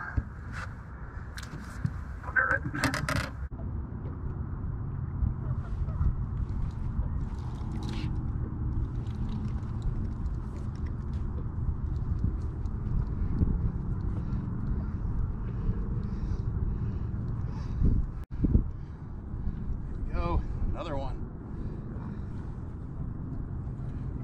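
Steady low rumble of wind buffeting the microphone on an open boat, with a few brief clicks and handling knocks.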